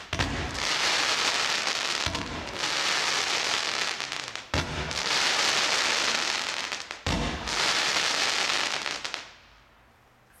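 Tiger Tails firework cake firing volleys of tailed comets: four sudden launch thumps about two and a half seconds apart, each followed by a long hissing rush as the tails burn, dying away near the end.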